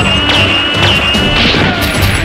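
Background music with dubbed-in action sound effects: a steady high whine through the first second and a half, cut by a few sharp impact hits.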